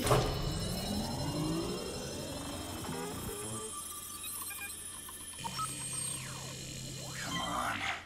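Synthetic sci-fi sound effects of a computer console powering up as a data stick is plugged in: several rising electronic sweeps at the start, then a steady low hum and a long falling sweep near the end, over a music score.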